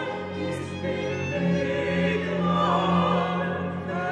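Baroque cantata performed one voice to a part: soprano, alto, tenor and bass singing together over period-instrument strings (two violins, viola, cello, violone) and chamber organ continuo, with a sustained bass line beneath.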